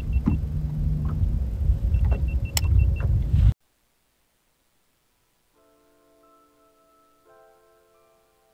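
A loud low rumble with a string of short, high electronic beeps, cut off abruptly about three and a half seconds in. Near the end, quiet, soft background music with sustained piano-like notes fades in.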